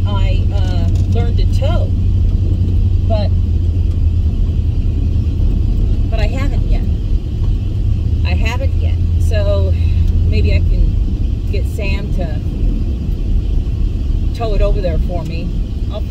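Steady low rumble of a vehicle's engine and road noise heard inside the cab, with a woman's voice speaking in short snatches over it.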